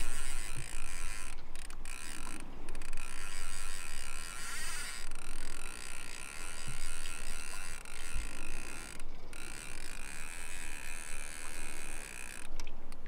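Spinning reel being cranked to wind in line, its gears whirring steadily, with a few brief pauses in the turning.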